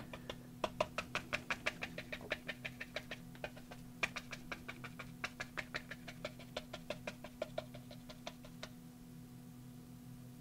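Stiff round brush stippling paint onto a board journal cover: a quick run of light taps, about five or six a second, with a short pause about three and a half seconds in, stopping near the end. A faint steady hum lies underneath.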